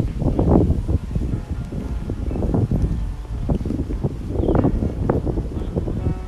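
Wind buffeting the microphone: a low rumble that rises and falls in irregular gusts.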